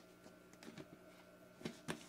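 Quiet room tone with a few faint, short clicks, the two clearest close together near the end.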